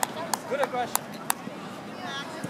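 Faint, scattered voices of players and spectators on an open playing field, with four sharp clicks or taps spread unevenly over the first second and a half.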